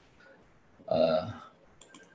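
A man's short hesitation sound, "eh", about a second in, between otherwise near-silent pauses in speech. Two or three faint clicks come near the end.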